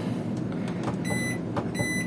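Washing machine control panel beeping twice as the temperature button is pressed, each a short, high electronic beep, with faint clicks of the buttons. The machine will not let the temperature be set as wanted on the down-quilt programme.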